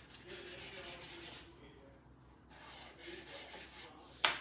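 Chalk pastel held on its side scraping back and forth across paper in quick shading strokes, with a brief pause about one and a half seconds in.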